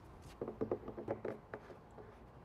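A plastic tap fitting being screwed by hand into a plastic barrel cap. A quick run of small clicks and knocks from the threads starts about half a second in and lasts about a second.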